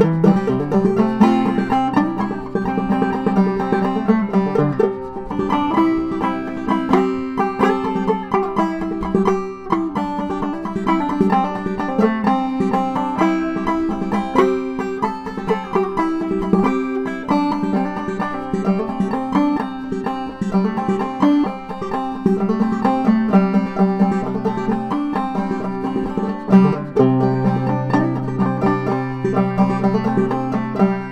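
Ramsey banjo played clawhammer style: a steady, rhythmic stream of plucked and brushed notes.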